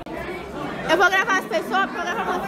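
People chattering in a room, with voices growing clearer and louder from about a second in.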